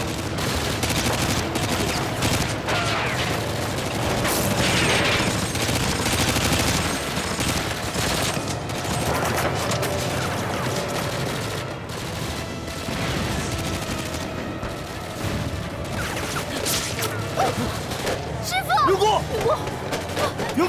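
Heavy, sustained gunfire from many guns, shots crowding over one another without a break, on a battle-scene soundtrack. Near the end a voice shouts over the firing.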